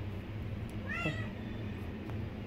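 A two-year-old orange tabby cat gives one short, soft meow about a second in, asking for food.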